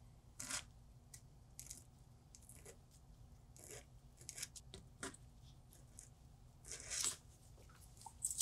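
Faint, short rasping strokes of a doubled-over diamond IPR strip drawn back and forth between the front teeth of a plastic typodont, with a longer stroke about seven seconds in.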